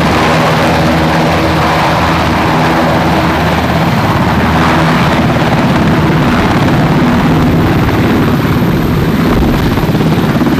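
UH-60 Black Hawk helicopter coming in to land close by, its rotor and turbine noise loud and steady throughout. A set of steady low hums within the noise fades out about eight seconds in.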